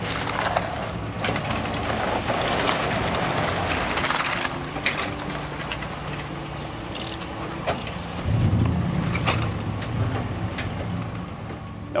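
Dodge Ram pickup truck's engine running on an icy boat ramp, with tyres crunching over the ice and gravel during the first few seconds. The engine revs up about eight seconds in, and a brief high chirp sounds about six seconds in.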